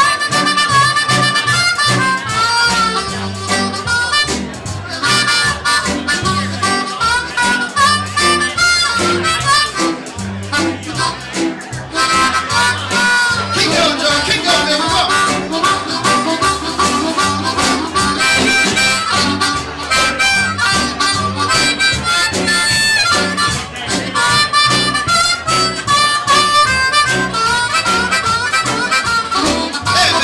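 Amplified blues harmonica, cupped against a handheld microphone, playing a bending solo over the band's steady bass and rhythm, growing busier about twelve seconds in.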